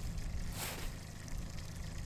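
Low, steady hum of a boat's motor running, with a brief rustle a little after half a second in.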